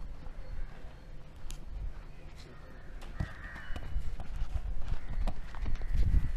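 Wind rumbling on the microphone, with scattered light knocks and a brief bird call about three seconds in.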